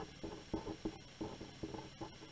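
Green felt-tip pen writing a word on paper: a quick, irregular run of short, faint scratching strokes.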